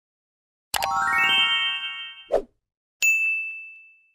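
Outro subscribe-animation sound effects: a bright rising run of chime tones that hold and fade, a brief thump, then a single bell-like notification ding that rings out and fades.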